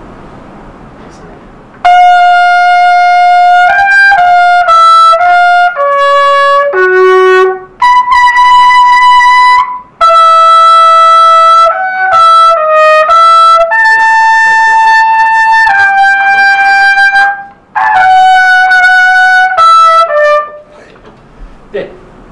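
Rotary-valve trumpet playing a loud melodic passage in two phrases, entering about two seconds in. The first phrase steps down through several notes and then jumps up to a held high note. The second moves among held notes and ends with a short falling figure. It is played while the mouthpiece is deliberately shifted downward for the higher notes and back up for the lower ones.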